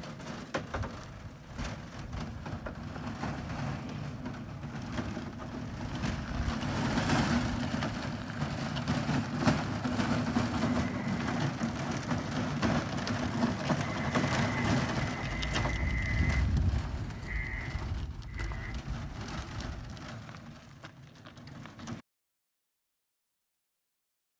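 Self-propelled VSP 14000 portable power unit driving itself on its wheels, with a steady hum from its drive and the gritty crunch of tyres rolling over dirt and gravel. The sound cuts off suddenly about two seconds before the end.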